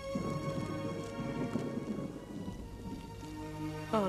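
Rain falling during a thunderstorm, with a low rumble of thunder over the first couple of seconds that then eases, under held notes of film-score music.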